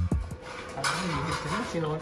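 A backing music track with a drum beat stops right at the start. Indistinct men's voices follow over background noise.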